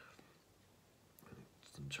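Near silence: a pause in a man's speech, with a faint breath about a second in and his voice starting again at the very end.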